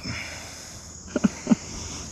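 Crickets and other insects trilling steadily, with three short soft pats a little past the middle as fine powdered feed is brushed off a hand.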